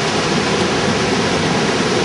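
Steady rushing of dam tailwater, an even noise with no break.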